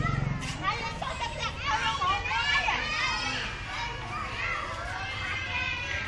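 Children's high voices shouting and calling out over one another as they play outdoors.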